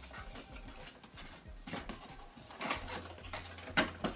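Small cardboard product box being handled and opened by hand: light scraping, tapping and rustling of the packaging, with a sharper click near the end.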